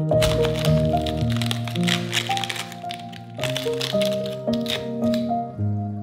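Chef's knife slicing through a raw green cabbage onto a wooden cutting board: rapid crisp crunching cuts in two runs, the second starting about halfway, over background music.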